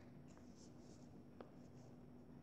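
Near silence: room tone with a faint steady hum, a few faint rustles and one faint click about a second and a half in.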